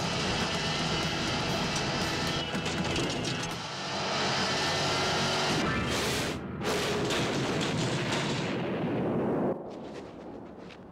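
Loud, dense crash and rumble of a vehicle smashing through, with debris flying, mixed with film music. It dips briefly about two thirds of the way through and cuts off suddenly near the end.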